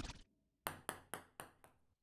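Music cuts off, then a ping-pong ball sounds: five or six sharp clicks about a quarter second apart, each fainter than the last.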